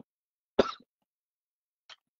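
One short cough about half a second in.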